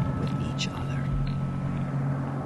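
Soft whispering, with a few hissy s-sounds, over a steady low drone and a thin high tone.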